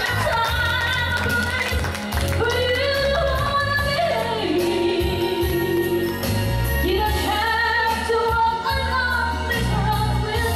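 A woman singing live into a microphone over instrumental accompaniment, the melody sliding between long held notes.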